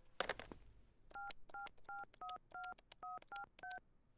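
Touch-tone desk telephone being dialled. A few clicks as the handset comes off the cradle, then a quick, even run of about nine short two-note keypad beeps, roughly three a second, as a number is keyed in.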